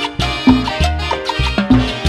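Instrumental passage of a Latin dance orchestra playing live: a horn section of trumpets, trombone and saxophones holds chords over a walking bass and percussion, with no singing.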